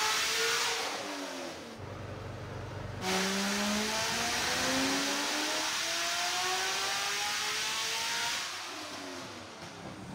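Supercharged LS9 V8 of a Corvette ZR1 on a chassis dyno. The revs of one wide-open-throttle pull finish and drop to idle for about a second. A second full pull then climbs steadily in pitch for about five seconds, and the revs fall away near the end as the throttle closes.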